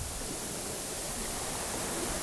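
Steady hiss of the recording's background noise, even and unchanging, with no other sound in it.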